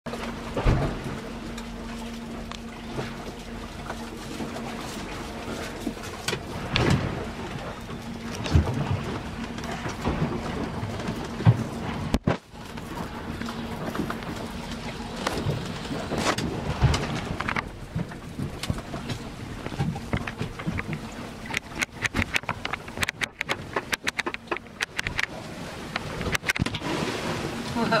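Steady rumbling noise in a boat's cabin, with a faint low hum through the first half, broken by many scattered knocks and clatters; a quick run of clicks and rattles comes in the last few seconds.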